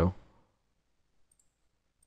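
The end of a spoken word, then near silence with two faint computer mouse clicks, one a little after a second in and one near the end.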